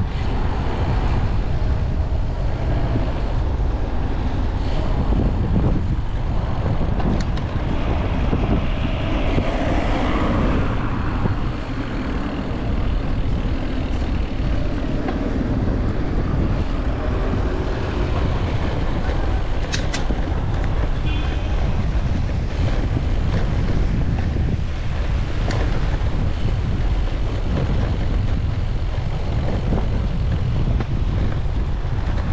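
Wind rushing over the microphone while riding a bicycle, over a steady background of city traffic with passing motor vehicles.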